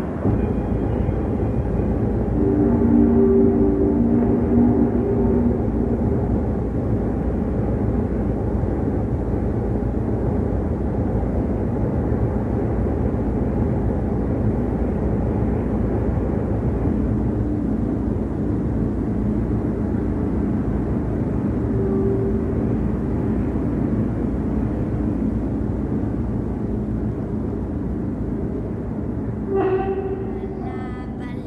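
Steady low rumble running without a break, with faint held tones rising above it a couple of seconds in and again in the second half.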